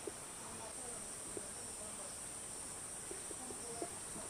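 Faint, steady, high-pitched drone of insects, with a few soft ticks scattered through it.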